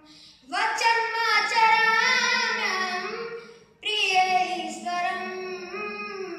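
A boy singing solo, unaccompanied, a Bollywood song set to Sanskrit words: two long melodic phrases with a quick breath between them a little before the four-second mark.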